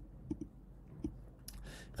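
Several faint, short clicks in a quiet pause, then a soft breath drawn in near the end.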